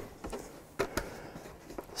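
Quiet room tone with a few faint light clicks near the middle, from handling a plastic gallon water jug and its cap.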